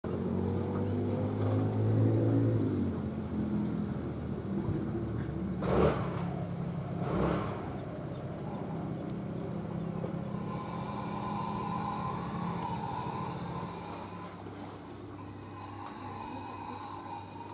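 An engine running steadily, loudest in the first three seconds, with two short rushing noises about six and seven seconds in.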